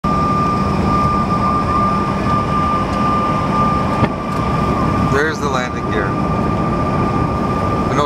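Steady cabin noise of a Bombardier CRJ-900 on approach: its rear-mounted turbofans and the rush of air, with a steady high whine running through it. A low hum stops with a sharp click about halfway through.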